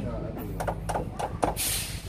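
A few light clicks of metal parts being handled, then near the end a short breathy hiss: air blown by mouth into the port of a truck's pneumatic 'kelinci' cylinder to test its freshly replaced piston seal for leaks.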